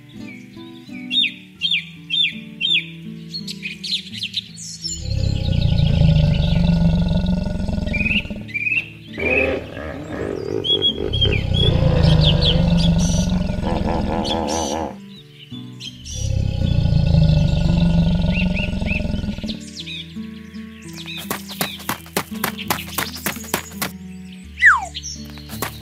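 Background music with animal sound effects: high bird chirps in the first few seconds, then three long, loud, deep animal calls. A rapid run of clicks follows near the end.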